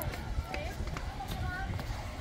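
Indistinct children's voices talking in the background, with a steady low rumble underneath.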